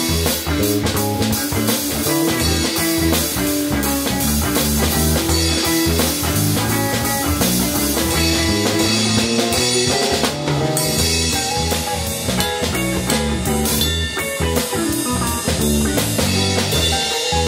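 Live jam of electric guitar, electric bass and drum kit vamping on a single E7 chord: the guitar plays descending octave phrases, the bass moves up into a higher register and the drummer plays with the hi-hat open, the band building up toward the ending.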